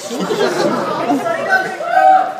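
Audience chatter in a large hall: many voices talking over one another, with one voice rising above the rest near the end.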